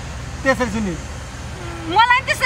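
A person's voice in short fragments, about half a second in and again near the end, over a steady low rumble.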